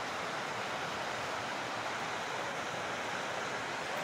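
River water rushing steadily over rocks in a small cascade of rapids.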